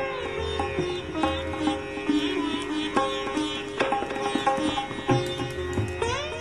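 Indian classical background music: a plucked string instrument like a sitar playing notes that slide and bend in pitch over a steady drone.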